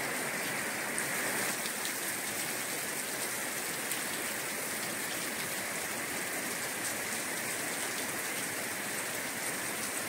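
Steady rain falling, an even hiss dotted with scattered ticks of individual drops.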